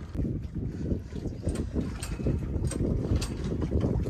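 Wind buffeting the microphone: a gusty, uneven low rumble, with a few faint sharp clicks.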